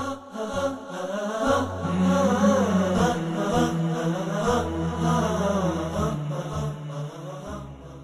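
Intro music: a vocal chant with a wavering melody over a low droning hum. It fades out near the end.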